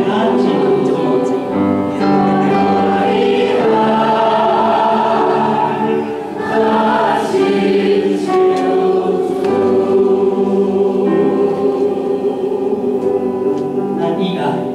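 A group of voices singing a hymn together in Taiwanese, led by singers on microphones. The notes are long and held, with short breaks between phrases about two and six and a half seconds in.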